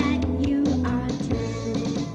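Upbeat recorded song with a steady drum beat, bass and singing, played for children to sing and dance along to.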